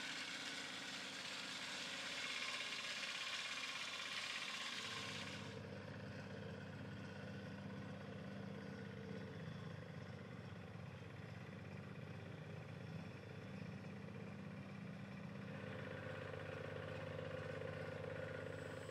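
Faint rushing hiss of water leaking through wooden dock gates for the first five seconds or so; it stops, and a low, steady engine drone carries on to the end.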